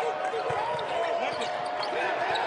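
Basketball dribbled on a hardwood court, a few thuds heard over steady arena crowd noise.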